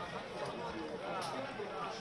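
Several voices calling out to one another over the live sound of a football ground, fairly quiet, with no commentary over them.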